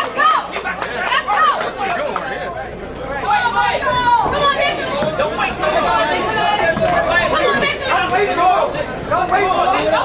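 Many voices talking and calling out at once, a steady crowd chatter in a large hall.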